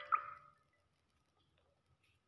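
The last mallet-like notes from the ORG 2021 keyboard app dying away, with one short, slightly rising high blip just after the start; after about half a second, near silence.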